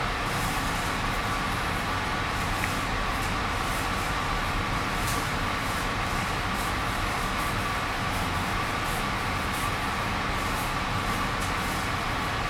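Steady, even room background noise with a faint steady whine running under it, and no distinct event.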